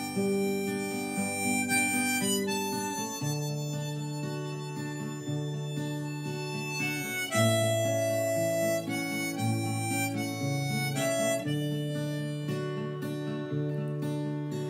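Harmonica in a neck rack playing a slow melody of long held notes over strummed acoustic guitar: an instrumental break between sung verses.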